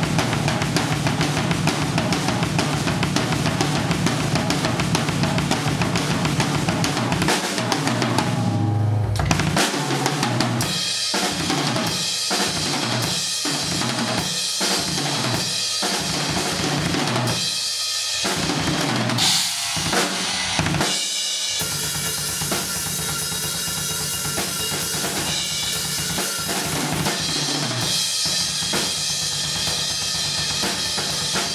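Acoustic drum kit played with sticks: a busy pattern of bass drum, snare and cymbals, breaking off about eight seconds in into evenly spaced single strokes, then a few scattered hits, before full playing resumes a little over twenty seconds in.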